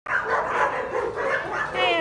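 Dogs barking, mixed with people's voices.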